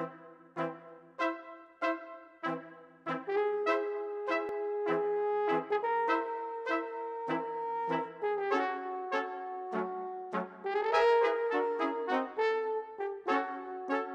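Brass quintet of two trumpets, French horn, trombone and tuba playing the opening bars of an overture. Short accented chords repeat about three every two seconds, then long held notes sound over the continuing repeated chords, swelling up to the loudest passage about three quarters of the way through.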